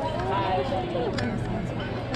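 Indistinct voices of people talking nearby in a crowd, over a low steady hum, with a few sharp clicks.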